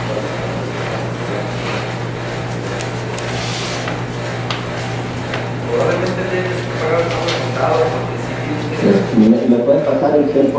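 People talking indistinctly across a table, louder in the second half, over a steady low hum.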